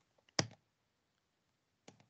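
Two short computer clicks as the presentation is advanced to the next slide: a sharper one about half a second in and a fainter one near the end, over very quiet room tone.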